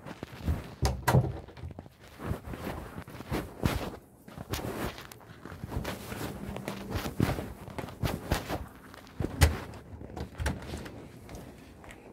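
Muffled rubbing of clothing against a phone's microphone inside a pocket, with irregular knocks and thumps as the wearer walks.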